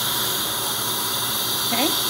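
Dental suction tip drawing air and saliva from the patient's mouth: a steady hiss.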